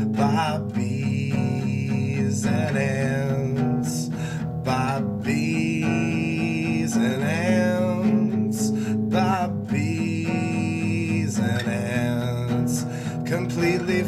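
Acoustic guitar playing an instrumental passage of chords, with a wavering melody line that rises and falls above it several times.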